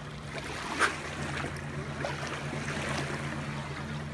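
Small waves washing at the lake shore over a steady low hum, with one brief knock about a second in.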